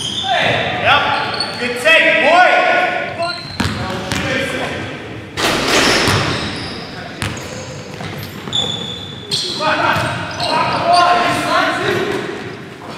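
Indoor basketball game: a ball bouncing on a hardwood gym floor with repeated sharp knocks, players calling out, all echoing in a large hall.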